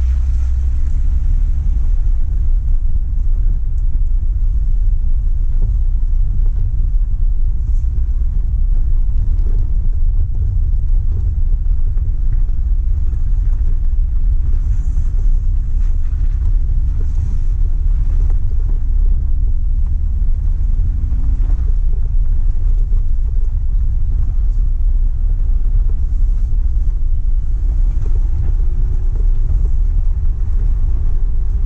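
An off-road vehicle driving up a rocky gravel trail: a steady low rumble of engine, tyres and drivetrain, with a faint engine note that rises a little near the end.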